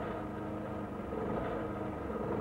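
A steady, low engine hum.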